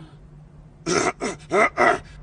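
Four short non-word vocal cries, grunting with a sliding pitch, from an animated character, starting about a second in and following each other quickly.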